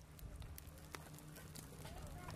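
Faint, scattered pops and crackles of a small wood fire burning in a cut-down steel barrel grill, over a low rumble.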